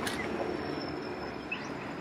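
Steady outdoor background noise, a low rumble and hiss like distant traffic, with a faint thin high tone held throughout and a brief faint chirp about one and a half seconds in.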